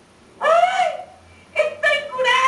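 A small dog yelping: one drawn-out cry that rises and falls, then two short yips about a second later.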